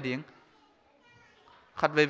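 A man preaching into a microphone stops, leaving a pause of about a second and a half in which a faint child's voice is heard in the hall; his speech resumes near the end.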